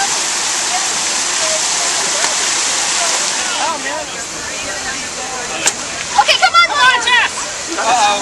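Steady rushing and splashing of water pouring down the stepped granite channels of a plaza fountain. It eases about halfway through, and people's voices call out loudly near the end.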